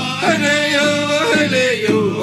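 A man singing a White Mountain Apache song, his voice holding notes and stepping from one pitch to the next several times.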